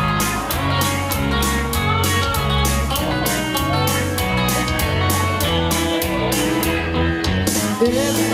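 Instrumental intro of a country-rock song: loud band music with guitar and a steady drum beat.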